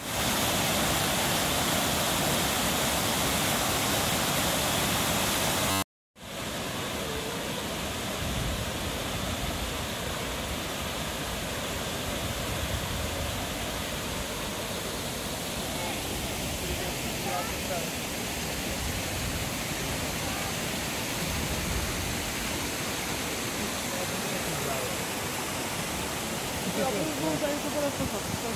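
Steady rush of waterfalls cascading into a lake. A cut about six seconds in leaves a quieter stretch of the same rushing water, with faint voices near the middle and near the end.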